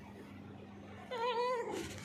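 A hungry white long-haired cat meowing once, about a second in: a single short call that wavers in pitch.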